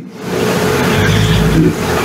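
A loud rushing noise lasting nearly two seconds, with a low rumble swelling in the middle and a faint steady hum through it.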